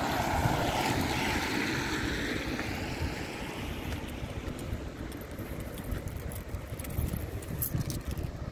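A car driving past on wet pavement: tyre hiss loudest in the first couple of seconds, then fading away. Steady wind rumble on the microphone underneath.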